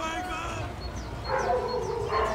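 A dog whining, with a drawn-out pitched call starting about two-thirds of the way in, over repeated high chirps of small birds.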